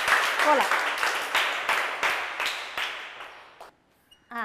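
A group clapping together in applause, dense at first and dying away near the end, with a short falling voice call about half a second in.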